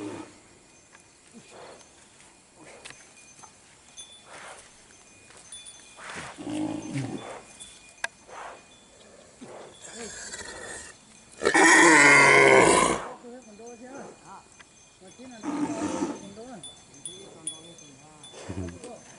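Humped brown bull bellowing: a few calls, the loudest and longest coming about twelve seconds in and lasting over a second, with lower, shorter calls before and after it.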